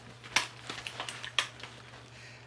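Loaded T-Rex Arms Orion padded war belt being swung around the waist and put on: nylon rustling with a few sharp clicks and knocks from its hardware and attached pouches and holster, the two loudest about a third of a second in and again near the middle.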